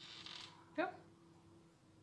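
A paintbrush stroking across a canvas board: a soft, scratchy brushing for about half a second at the start, followed by a short spoken "yep".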